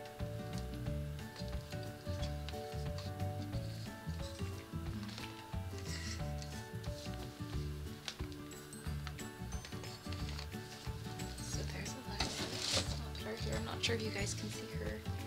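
Background music with sustained notes over a pulsing low part, with rustling and rubbing noises from handling a doll and its packaging, loudest about twelve seconds in.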